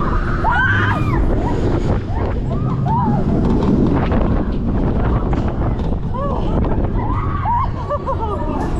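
Rush of wind and rumble from a spinning Intamin ZacSpin 4D coaster car as it flips, with riders screaming in short rising-and-falling shrieks, in clusters near the start, about three seconds in and near the end.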